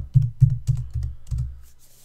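Keystrokes typed on a computer keyboard: about six quick, evenly paced key presses. They stop about one and a half seconds in.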